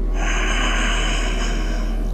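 A man's long, deep inhalation through the nose, heard as a steady breathy hiss for nearly two seconds. A constant low hum runs underneath.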